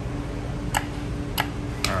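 Dragon Link slot machine running a spin: three sharp ticks roughly half a second apart over a steady low hum.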